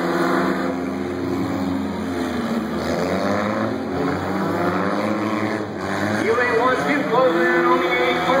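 Several race-car engines running together as old passenger cars lap a dirt figure-8 track, a steady drone with the pitch shifting as the drivers work the throttle.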